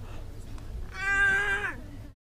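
A single high-pitched, meow-like vocal cry about a second long, holding its pitch and then falling away as it ends.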